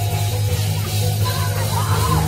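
Live church band playing Pentecostal praise-break music, loud and steady, with a heavy bass guitar low end.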